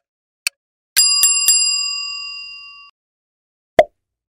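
Quiz countdown timer sound effect: the last two ticks half a second apart, then a bicycle-style bell rung three times in quick succession, its ringing fading over about two seconds, marking time up. A brief loud pop near the end as the card changes.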